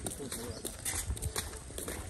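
Light, irregular clicks and knocks from walking and pushing a bicycle along a road: footsteps and the bicycle's rattle.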